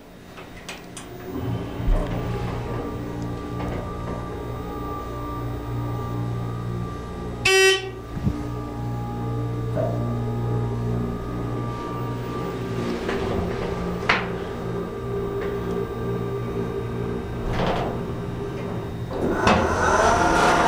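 Hydraulic elevator pump motor running with a steady low hum as the car rises one floor, with a short beep about a third of the way through. The doors begin sliding open near the end.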